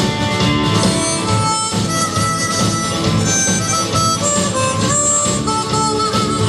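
Harmonica played live into a handheld microphone, with sustained notes that step and slide in pitch, backed by a band with electric bass and guitar.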